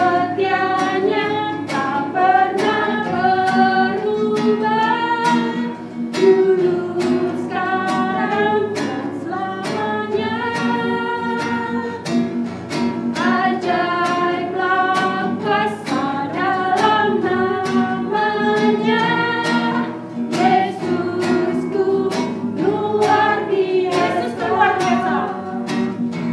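Voices singing an Indonesian children's praise song together, accompanied by a strummed acoustic guitar.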